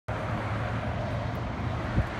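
A vehicle engine running steadily, heard as a constant low hum under a haze of outdoor noise.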